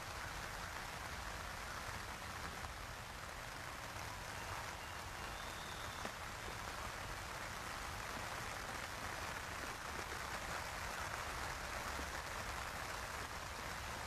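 Steady outdoor ambience: an even hiss with a low rumble underneath and a few faint clicks.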